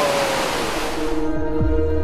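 Rushing water of a mountain waterfall, fading out about a second in as ambient background music with sustained tones takes over, joined by low swooping bass notes.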